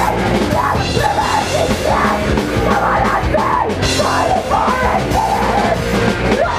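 Hardcore punk band playing live and loud: distorted electric guitars and a pounding drum kit, with a shouted vocal over them.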